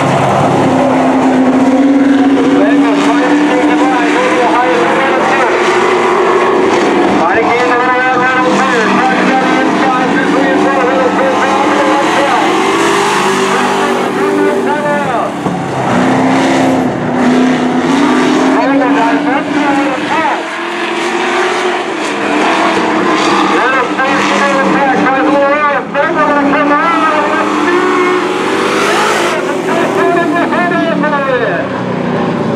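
Dirt-track race trucks running laps, their engines rising and falling in pitch over and over as they accelerate on the straights and lift off for the turns.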